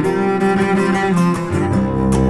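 Instrumental folk music led by a bowed cello holding sustained notes, with some plucked string attacks; a deep low note comes in near the end.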